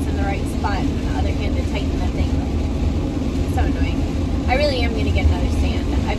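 Steady road and engine rumble heard from inside a moving van's cab.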